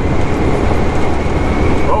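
Inside a semi truck's cab at highway speed: a steady, low diesel engine drone mixed with road and tyre noise.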